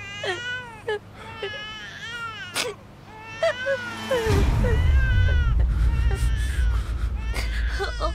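Infant crying in repeated high wails that rise and fall. About halfway through, a deep low rumble comes in underneath and becomes the loudest sound.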